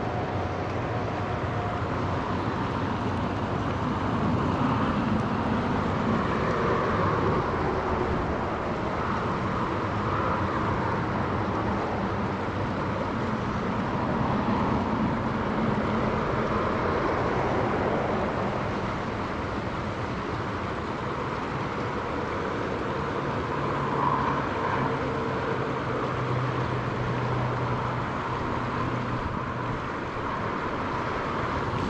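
Highway traffic crossing a bridge over the river, tyres and engines running steadily over the rush of the rapids, with a lower engine drone from a passing truck in the last several seconds.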